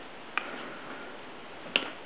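Two light, sharp clicks of a supercharger bypass valve and its metal bracket being handled, one about a third of a second in and one near the end.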